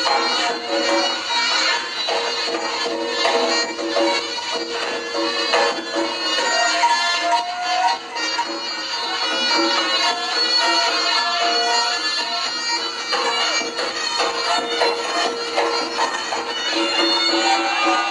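Reog gamelan accompaniment: a reedy slompret shawm plays a wavering melody over steady held tones and frequent drum strokes.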